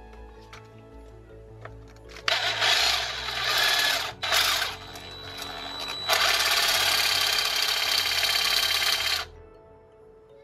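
Parkside PSSSA 20-Li A1 cordless jigsaw/sabre saw run in short bursts with its reciprocating blade sawing at the steel blade of a pair of scissors. A first run starts about two seconds in and lasts about two seconds, followed by a brief blip. A longer, steady run of about three seconds starts about six seconds in and cuts off suddenly just after nine seconds. Faint background music plays underneath.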